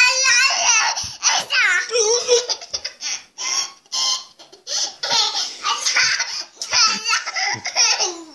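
A toddler girl laughing again and again in a high voice, with bits of childish babble between the laughs.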